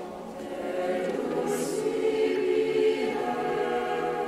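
A choir singing, holding long sustained notes.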